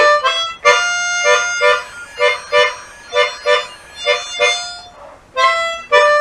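Chromatic harmonica playing a tongue-blocked blues lick: a held draw note, then a run of short, rhythmic repeated stabs made by tongue lifts on the six draw, a brief pause, and a closing six blow to five draw.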